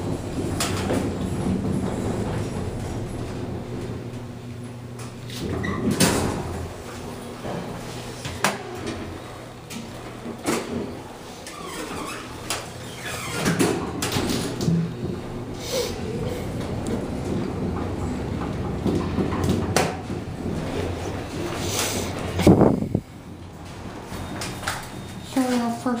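Montgomery elevator cab in operation: a steady low hum with scattered knocks and clicks. The loudest knock comes about 22 seconds in, after which it turns quieter.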